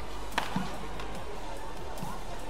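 Background music, with a sharp crack of a badminton racket hitting the shuttlecock a little under half a second in, followed about a fifth of a second later by a duller thud.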